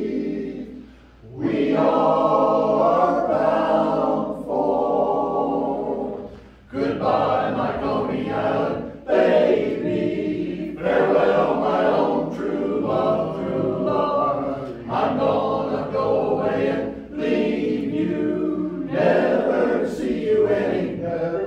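Men's barbershop chorus singing a cappella in close four-part harmony: sustained chords phrase after phrase, with brief breaks about a second in and around six and a half seconds in.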